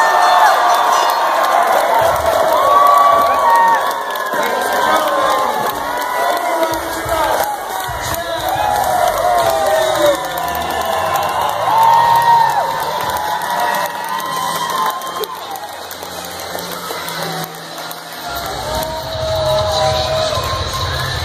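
Crowd of wrestling fans cheering, shouting and whooping in a school gymnasium, many voices overlapping throughout, cheering a wrestler's win.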